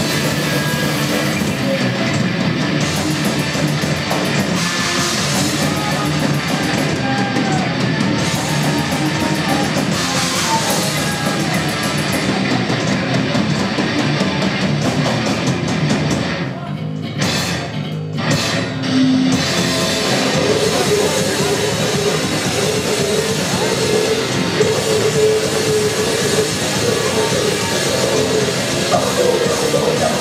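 Live heavy metal band playing loud and fast: distorted electric guitars and bass over a drum kit. A little over halfway through the band cuts off in a couple of brief stop-hits, then comes back in at full volume.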